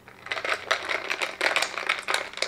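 A straw stirring an iced latte in a glass cup, ice rattling and clinking rapidly against the glass, starting just after the beginning.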